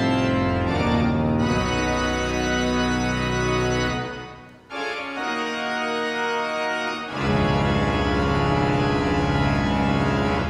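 Pipe organ playing full, held chords over a deep pedal bass. About four seconds in the bass drops out and the sound briefly dips. The chords then go on in the upper range until the deep bass comes back about seven seconds in.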